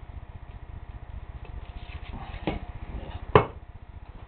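Two sharp knocks from parts and wiring being handled on a tabletop, the second and louder one near the end, over a steady low hum.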